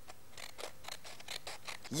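Scissors snipping through folded brown card in a faint run of quick cuts.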